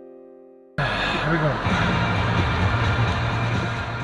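Piano music fading out, then a sudden cut to the inside of a moving car: steady engine hum under dense road noise from tyres on a wet road.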